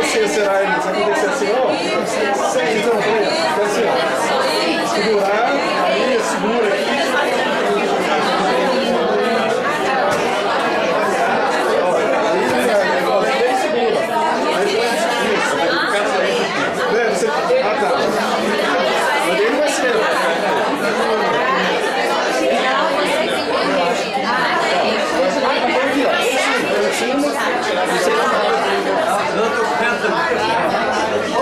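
Many people talking at once in a crowded room: a steady, loud babble of overlapping conversations with no single voice standing out.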